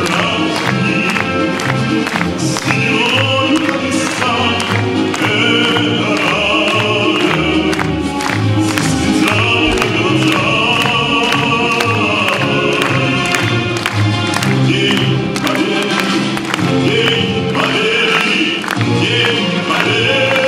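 Music: a choir singing with instrumental accompaniment.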